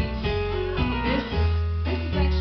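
A live band playing, with guitar to the fore. A deep, loud bass note comes in strongly near the end.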